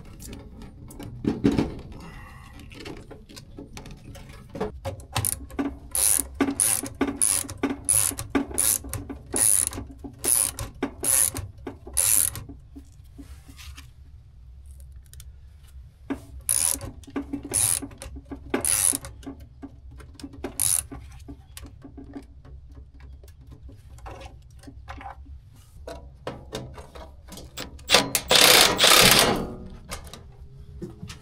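Hand tools working on a package unit's wiring: runs of sharp metallic clicks, about two a second, over a low steady rumble. Near the end comes a louder burst about a second and a half long.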